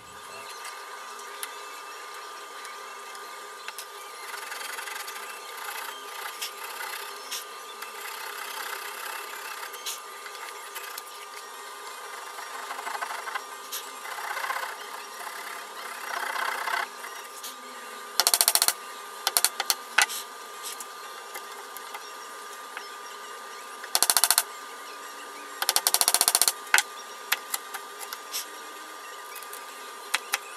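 Wood chisel paring and scraping cherry at a joint: short, irregular cutting strokes, with three louder bursts of scraping in the second half.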